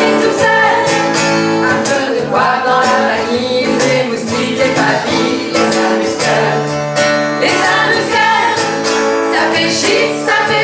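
Acoustic guitar strumming chords with a harmonica playing sustained notes over it, and voices singing along in a French chanson.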